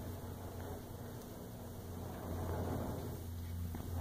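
Large sliding table of a band saw pushed by hand along its carriage, with the saw switched off: a faint low rumble over a steady low hum, swelling a little past the middle.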